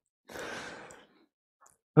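A man's short audible breath, a breathy rush of under a second that fades away.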